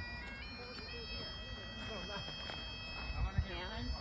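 Bagpipes playing: steady drones under a melody whose notes step upward in the first second, then hold.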